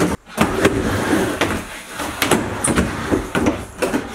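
A run of knocks and thuds from feet and a skateboard on a wooden indoor mini ramp.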